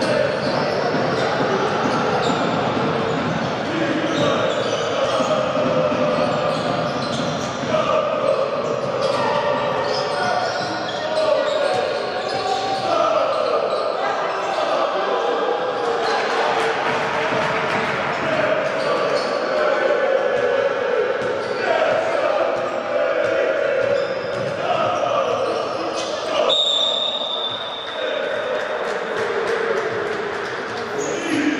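Basketball game sound in a large arena: a ball dribbling on a hardwood court under steady crowd voices and chanting.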